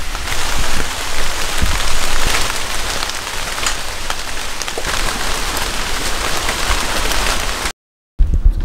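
Heavy rain falling steadily, a dense hiss with scattered drop ticks. It cuts off abruptly just before the end.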